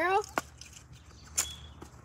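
A toy bow loosing an arrow: a sharp snap of the bowstring about halfway through, with a brief high ring after it. A softer click comes just before.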